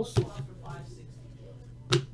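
Two sharp clicks from trading cards being handled and set down on a tabletop, one just after the start and one near the end, over a steady low hum.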